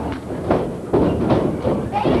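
Several heavy thuds from wrestlers hitting the ring, about four in two seconds, among shouting voices.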